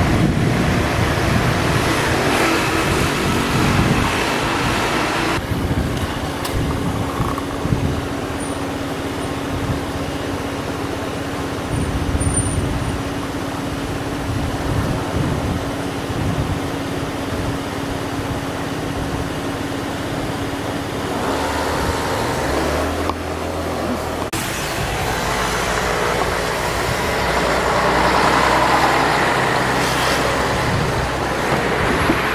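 Street traffic noise from passing road vehicles, with a steady low hum through the middle stretch and a louder swell near the end as a vehicle passes.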